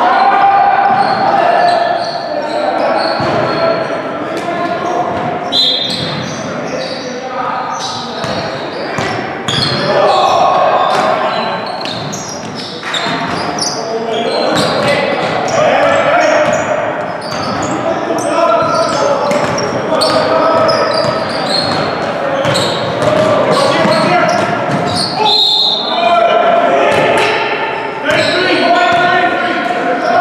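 A basketball bouncing on a hardwood gym floor in live play, mixed with players' voices, all echoing in a large hall. The impacts are short, sharp and irregular.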